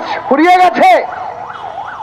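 A siren wailing in the background, its pitch rising and falling quickly over and over, most plainly heard in the second half after a burst of a man's shouted speech.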